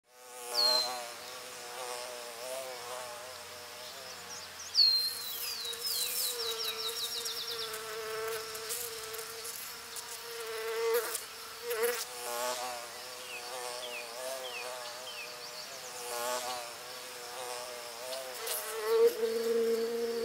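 Honeybees buzzing close by, the hum wavering in pitch and swelling as bees pass. A bird gives a quick run of high, falling chirps about five seconds in and a few more chirps later.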